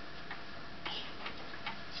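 A few light clicks and taps at uneven intervals over faint steady room noise.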